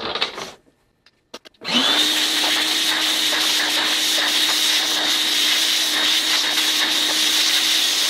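Shop vacuum switched on after a couple of clicks about a second and a half in, spinning up quickly to a loud, steady whine and rush. Its nozzle is sucking concrete dust out of a hole drilled through the top of a steel safe.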